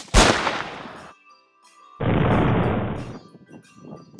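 A single shot from a scoped rifle right at the start, dying away over about a second. About two seconds in comes a second loud burst of noise, lasting about a second and cutting off abruptly.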